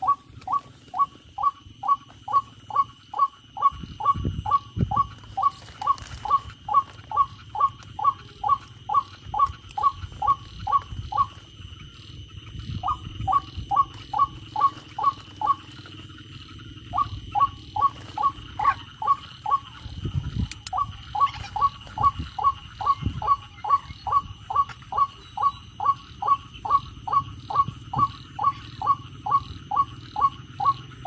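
A white-breasted waterhen call played through a battery-powered bird-caller speaker: short notes repeated fast and evenly, about three a second, stopping briefly twice in the middle. A few low knocks come from hands handling the player boxes.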